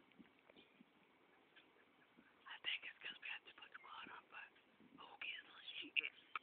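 Quiet whispered speech close to the phone's microphone, starting about two and a half seconds in, with a near-silent lull before it.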